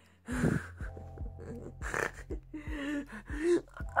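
A woman gasping and breathing hard with short strained vocal sounds, straining with a heavy box, with a few soft low bumps of handling.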